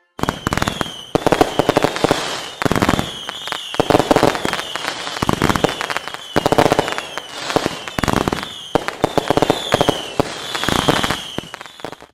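Fireworks display: a steady run of bangs and crackling that swells every second or so, with short high whistles falling slightly in pitch, fading out near the end.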